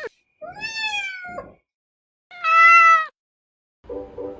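Domestic cat meowing twice. The first meow is longer and falls slightly in pitch; the second is shorter and holds a steady pitch.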